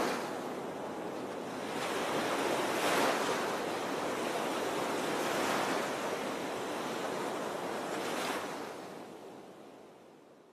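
Rushing noise of wind on the microphone and the scrape of sliding fast over packed snow, swelling about two to three seconds in and again near eight seconds, then fading out.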